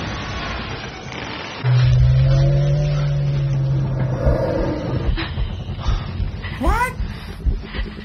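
Soundtrack of a TV drama scene. A steady low drone starts suddenly about two seconds in and holds for a couple of seconds, and short rising calls or cries come near the end.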